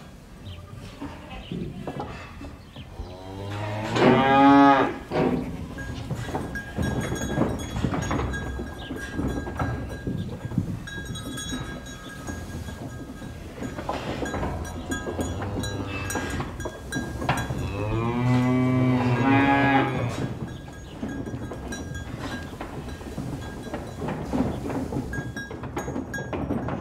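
Cattle mooing: two long, loud moos, about four seconds in and again near twenty seconds. Between them, a busy farmyard background of scattered knocks and faint steady high tones.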